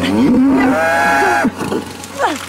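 A cow in a difficult calving bellowing: one long, loud moo that rises and then falls in pitch, lasting about a second and a half.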